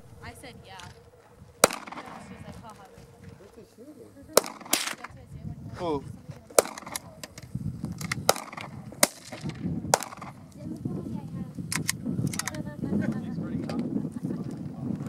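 Semi-automatic pistol shots: several sharp reports, irregularly spaced about a second or two apart, some louder than others, with faint voices in the background.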